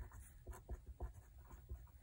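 A pen writing on a paper workbook page: a run of faint, short scratching strokes as words are written out by hand.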